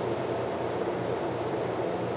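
Steady background hum with no distinct sounds in it.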